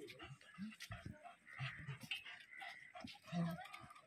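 A dog vocalising in short, separate sounds, with people talking around it.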